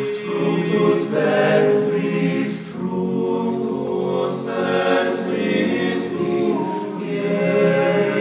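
Male choir singing a cappella, holding long chords that shift every second or so, with crisp sibilant consonants.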